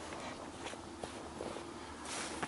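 Faint footsteps on sand, with a few light ticks over a low outdoor hiss.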